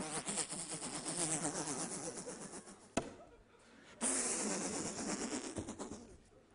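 Theatre audience laughing and applauding in two waves: a burst of about three seconds that dies away, then a second burst about four seconds in. There is a single sharp knock about three seconds in.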